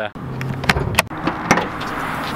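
Hood of a 2020 Toyota Camry being opened by hand: three or four sharp metallic clicks and clunks of the latch and hood, about half a second apart, over rustling handling noise.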